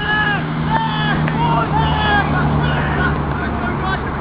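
Voices shouting on a rugby field: short, high calls one after another, with a steady low engine hum underneath.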